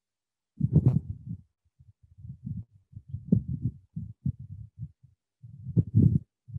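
Irregular dull, low bumps and scrapes from writing with a stylus on a pen tablet, carried into the microphone, with dead-silent gaps between them.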